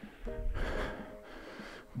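A person's heavy, breathy exhale during a dumbbell side lunge, lasting about a second, with a faint held tone in it, then fading.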